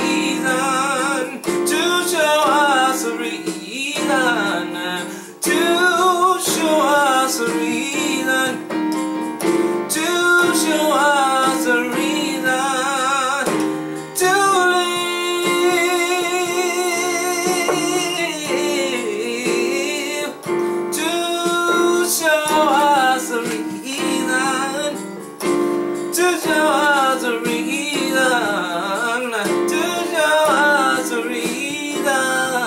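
A man singing with heavy vibrato over sustained chords on an electronic keyboard, the chords changing every few seconds.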